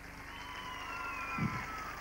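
Studio audience applauding and cheering at the end of a song, with a long high tone sliding slowly down through it.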